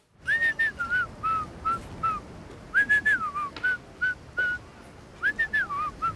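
A tune whistled in short notes and slides, in three phrases with brief pauses between them.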